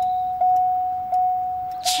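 A single-pitched bell-like ding, struck again about every three-quarters of a second, each strike ringing on until the next.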